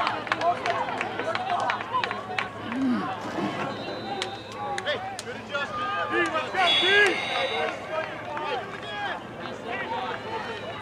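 Many overlapping voices of players, coaches and spectators talking and calling out along a football sideline, with a louder shout about seven seconds in and scattered sharp clicks.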